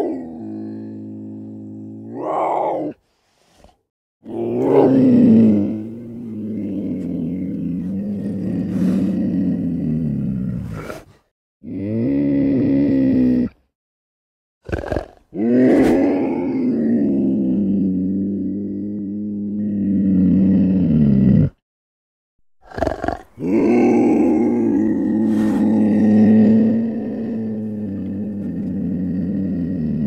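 Cartoon black panther growl-roar sound effects: a run of about five long, low, rumbling growls lasting several seconds each, separated by short silences, with two very brief snarls between them.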